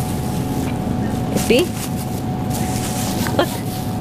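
Steady background rumble of a supermarket, with a faint constant hum, while a thin plastic produce bag is rubbed between fingers to open it. A short click comes about three and a half seconds in.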